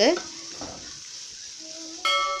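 Onion-tomato masala sizzling steadily in a nonstick frying pan as a wooden spatula stirs it, the spiced base being sautéed to cook off its raw smell.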